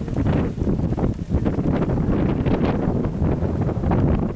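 Wind buffeting the camera's microphone, a loud, uneven low rumble that rises and falls in gusts.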